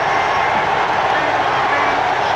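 Basketball arena crowd cheering in a steady, loud roar of many voices, celebrating a game-winning basket at the buzzer.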